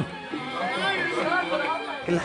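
Background chatter of several people talking at once in a bar, with music playing underneath.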